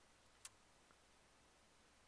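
Near silence: room tone, with a single short click about half a second in.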